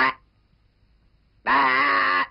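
A brief sound right at the start, then, after near silence, a cartoon character's wordless groan lasting about three-quarters of a second, its pitch wavering slightly.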